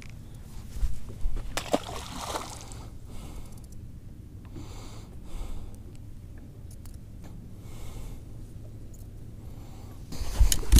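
A largemouth bass dropped back into the lake, a short splash and slosh of water in the first couple of seconds, with a few small knocks from handling on the boat deck.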